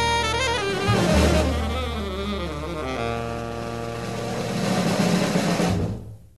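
Jazz-style jingle music with saxophone, brass and drums, settling about halfway through into a long held chord that swells toward the end.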